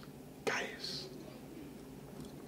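A man's short breathy whisper about half a second in, over faint steady room hum.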